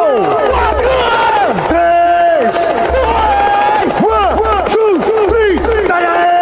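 Electronic DJ sound effects on a tecnobrega sound system during a "chavada" effects drop: a string of pitched synth swoops that rise and fall or dive steeply, a held tone, and a low bass note that cuts in and out about every second.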